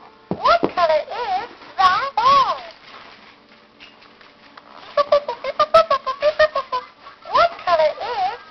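Baby's toy telephone playing a quick electronic tune of short, steady-pitched notes when its keys are pressed, about five seconds in. High, sliding voice sounds come about half a second in, around two seconds and near the end.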